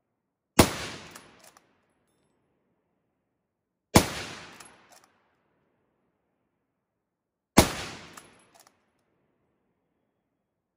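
Three shots from a .303 Lee-Enfield SMLE No. 1 Mk III bolt-action rifle, about three and a half seconds apart, each ringing out with a short echo and followed within a second by fainter clicks.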